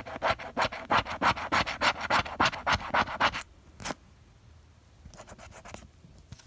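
A plastic scraper scratching the coating off a paper lottery scratch-off ticket in quick back-and-forth strokes, about five or six a second, for about three seconds. Then a single stroke and a few lighter ones near the end.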